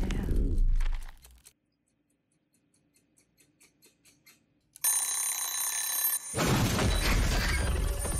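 Horror-film soundtrack: a loud noise with deep bass that cuts off about a second and a half in, then near silence with faint clicks, then a bell-like ringing with steady high tones from about five seconds in, joined a second later by a loud rushing noise.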